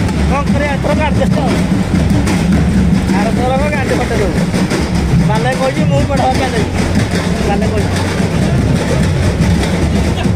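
Tractor engine running steadily with a low hum, with voices calling out over it a few times.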